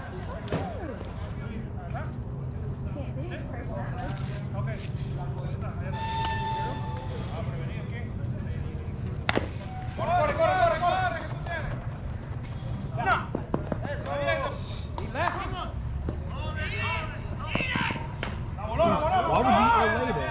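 Players calling out to each other across a softball field, too far away to make out, over a steady low rumble. One sharp crack comes about nine seconds in.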